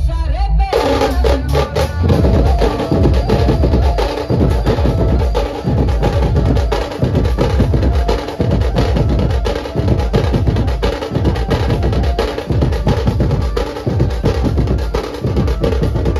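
A dhumal band's large barrel drums and bass drums beaten with sticks in a fast, dense rhythm with a heavy low end. The drumming breaks in about a second in, cutting off a short tune.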